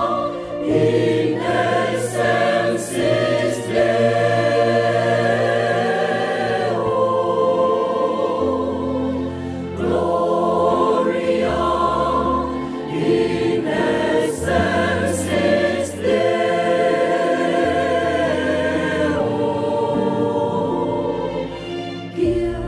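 Mixed church choir of men's and women's voices singing a Vietnamese Christmas carol, holding long notes over a steady low accompaniment.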